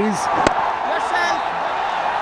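Cricket bat striking a spun delivery, a single sharp knock about half a second in, over a steady murmur from the stadium crowd.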